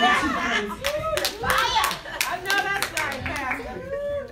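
Irregular hand clapping mixed with voices calling out.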